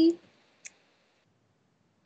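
One short click about two-thirds of a second in, from a computer mouse or keyboard used in the editing software. The end of a spoken word runs into the start, and the rest is near silence.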